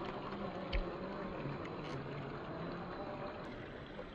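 Electric motor and geared drivetrain of an RC rock crawler (Axial SCX10 II with a 540 35T brushed motor) whining and buzzing as it crawls over rock, its pitch stepping up and down with the throttle. There is one low knock about three-quarters of a second in as the truck shifts on the rock.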